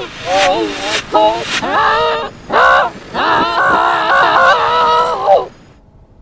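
Cartoon character voices distorted by audio effects, in short bending phrases and then one long, wavering held vocal sound that cuts off suddenly about five and a half seconds in.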